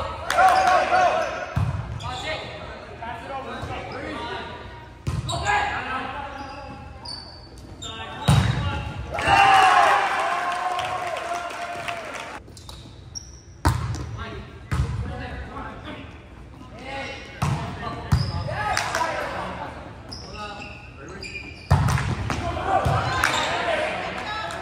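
A volleyball being struck again and again during rallies, each hit a sharp smack echoing around a large gym, with players and spectators shouting in between.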